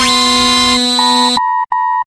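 Edited-in electronic sound effects: a loud, steady buzzing tone holds for the first second and a half, then gives way to short repeated beeps at one pitch, about two and a half a second.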